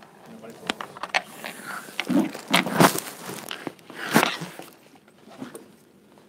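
Handling noise from a hand-held recording camera being moved about: irregular knocks and rubbing on its microphone, loudest a little before the middle. Indistinct voices murmur underneath.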